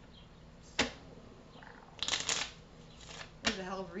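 Tarot cards being handled and shuffled: a sharp tap about a second in, then two short papery bursts of shuffling, around two and three seconds in.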